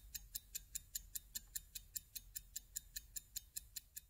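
Faint, fast, even ticking at about five ticks a second, like a clock's tick.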